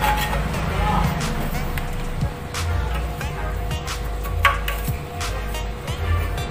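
Metal scraper scraping old glue off the leaking seam of a steel motorcycle fuel tank in short, irregular strokes, over steady background music.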